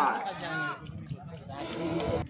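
High, drawn-out shouting cries from people at a cricket ground. A loud wavering call fades in the first second, another short rising-and-falling cry comes about half a second in, and quieter chatter follows.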